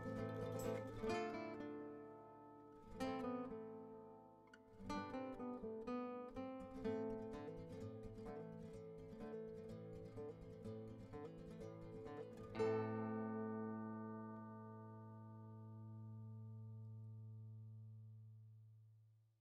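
Background music on a plucked string instrument: a run of quickly picked notes, then a last chord struck that rings on and slowly fades away.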